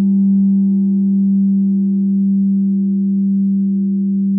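A single sustained low droning tone with a few higher overtones, held steady and fading only slightly.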